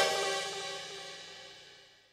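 The final chord of a rock song ringing out: cymbal and guitar sustain dying away after the band stops, fading out within about a second and a half.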